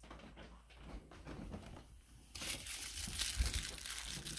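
A foil crinkle-ball cat toy crinkling in a hand, getting much louder about two seconds in.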